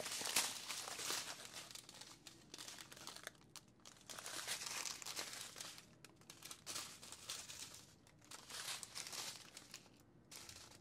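Strips of thin plastic bags of diamond-painting drills crinkling as they are handled and shuffled. The crinkling comes in irregular rustling spells and is loudest in the first second.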